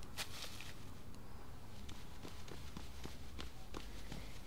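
Soft footsteps approaching across a room floor, a few light steps mostly in the second half, over quiet room tone with a light click near the start.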